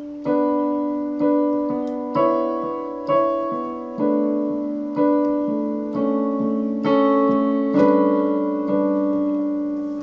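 Digital keyboard on a piano voice, both hands playing slow chords voiced in sixths, struck about once a second and left to ring and fade. The sixths give the chords a sad sound.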